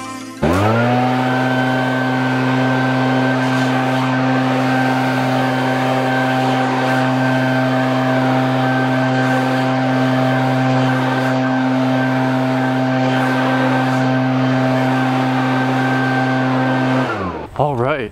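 Echo two-stroke backpack leaf blower throttled up to full speed about half a second in and held there, one steady, unchanging engine tone with a rush of air, then throttled back and winding down near the end.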